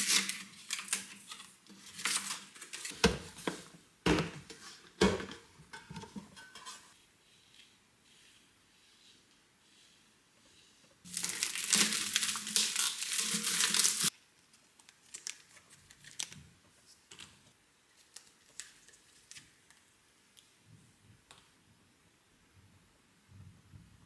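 Plastic packaging film crinkling as stainless steel food containers are handled, with a few sharp knocks of the containers on the counter in the first seconds. About 11 seconds in, three seconds of loud crinkling and tearing as the wrapping is pulled off a container, then only faint light handling ticks.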